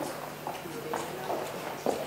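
Footsteps clicking on a hard floor, several separate sharp steps, with low murmuring voices behind.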